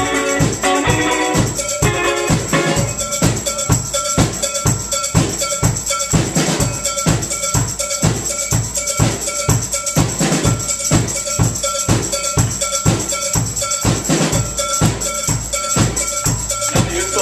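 Live band playing: a drum kit keeps a steady beat of about four hits a second under electric guitars, with a tambourine shaken in time.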